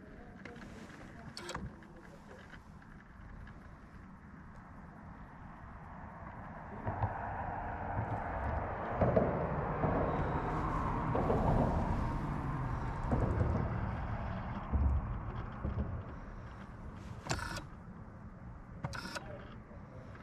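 Electric trolling motor running for several seconds in the middle, building up and then easing off, with a few sharp clicks near the end.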